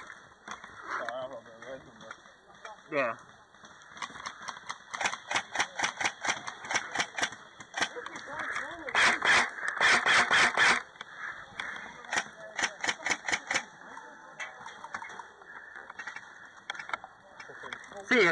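Airsoft guns firing: strings of rapid shots from about four seconds in, a long, loud burst of fully automatic fire from about nine to eleven seconds, then more strings of shots. Faint shouting voices in the first few seconds.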